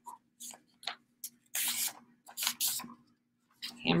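A sheet of paper being folded in half and creased by hand: rustling and crinkling in short irregular bursts, the loudest a little past the middle.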